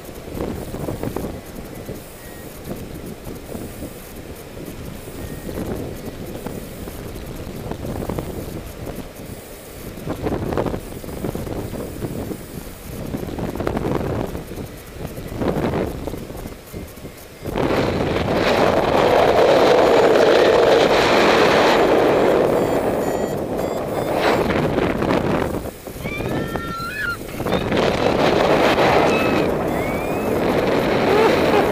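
Wind buffeting the camera microphone of a paraglider in flight: a gusty rush that turns much louder a little over halfway through and stays strong, with a brief dip near the end.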